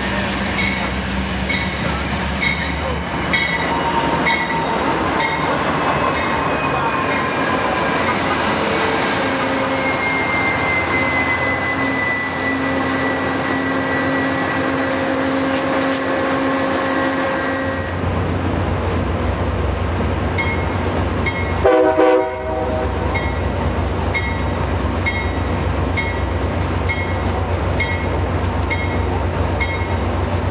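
Amtrak passenger train with GE P42DC diesel locomotives rolling past, its engines and wheels making a steady rumble. A long metallic squeal falls slightly in pitch midway, and a short loud pitched blast comes about two-thirds of the way in. A level-crossing bell dings in a steady rhythm at the start and again after it.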